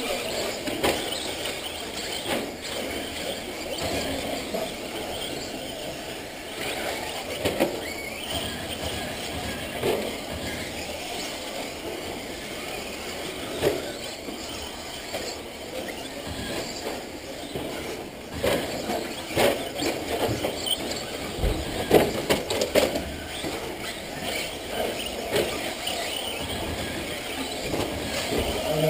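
Several radio-controlled off-road cars racing on a clay track: a continuous run of small motors and tyres, broken by scattered sharp knocks as cars land from jumps and hit bumps.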